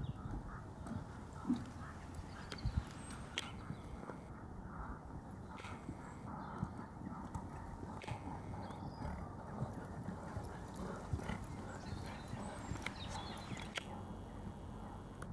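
Hoofbeats of a horse trotting on a sand arena, a run of soft thuds, with a few sharp clicks along the way.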